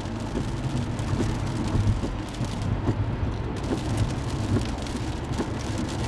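Steady road noise inside a moving car on a wet highway: a low hum of engine and tyres, with many small irregular ticks of rain hitting the windshield.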